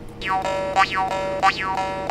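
Murchunga, the Nepali iron jaw harp, being played: a steady twanging drone with bright overtones that sweep up and down again and again as the player's mouth shapes them.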